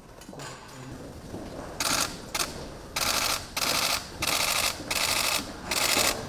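Camera shutters firing in rapid bursts: about six half-second strings of fast clicks, starting about two seconds in.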